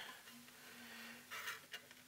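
Quiet room with faint handling noise from hands working wires inside a small metal amplifier chassis. A faint steady low hum runs through much of it, with a brief soft rustle about halfway through.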